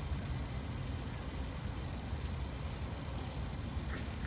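Steady, low outdoor background rumble with no distinct events.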